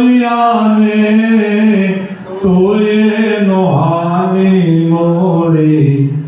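A man chanting a slow devotional melody into a microphone, holding long notes that step from pitch to pitch, with a short pause for breath about two seconds in.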